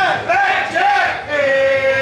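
Pike Place Fish Market fishmongers' shouted call-and-response chant as a fish is thrown across the counter: men's voices calling loudly in a sing-song, a few short rising-and-falling shouts, then one long held call.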